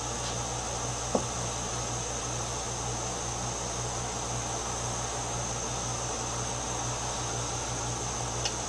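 Steady electrical hum with a constant hiss, like a running fan, and one light click about a second in.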